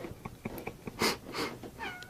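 A cat gives one short meow near the end, falling in pitch, after a few soft clicks and two brief hissing rustles.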